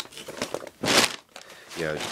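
Brown paper shipping bag crinkling as a hand reaches in and pulls a jacket out, with one louder rustle about a second in.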